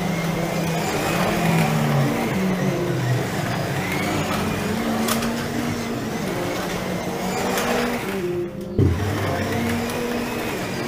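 1/24-scale electric slot cars running around a plastic track, their motors whining in pitches that rise and fall again and again as they lap. A brief dip and then a sharp knock about nine seconds in.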